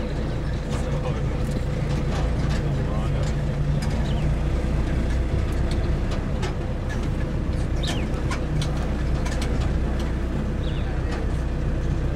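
Safari game-drive vehicle's engine running steadily with a low hum, with scattered clicks and knocks over it.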